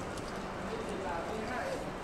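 Footsteps on a hard tiled floor, a steady walking rhythm, with indistinct voices of people talking in the background.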